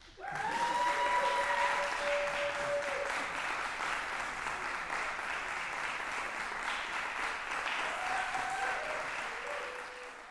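Concert-hall audience applauding, breaking out suddenly right after the final note, with a few drawn-out cheers near the start and again near the end.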